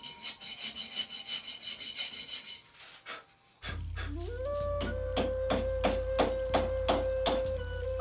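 Rasp scraping across stone in repeated strokes. About three and a half seconds in, a low drone and a sustained note that slides up and then holds begin as music, over steady hammer-on-chisel taps against stone, two to three a second.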